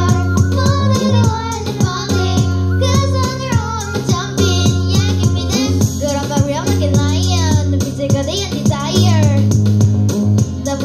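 Young girls singing live into microphones over a K-pop dance backing track played through PA speakers, with a steady beat and a sustained bass line.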